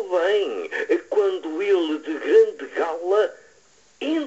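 Speech: a single voice reciting poetry, with strongly rising and falling intonation, pausing about three-quarters of the way through.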